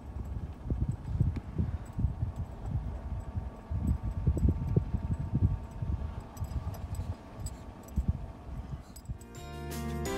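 Wind buffeting the microphone: low, irregular gusts of rumble. Music fades in near the end.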